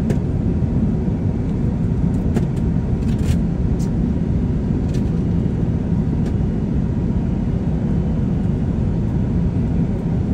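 Airbus A380 cabin noise in flight: a steady low rumble of engines and rushing air, with a few faint clicks in the first half.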